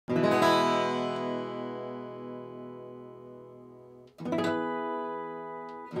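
Acoustic guitar strumming two chords about four seconds apart, each left to ring out and fade slowly.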